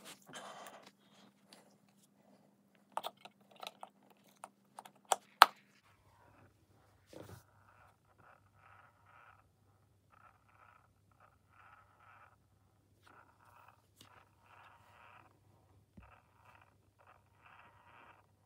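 Clicks and knocks of a battery being fitted into a Perfect Petzzz toy cat. Then, from about six seconds in, the cat's battery-powered breathing mechanism runs: a faint low motor hum with soft, quickly repeating whirring, quite noticeable for this kind of toy.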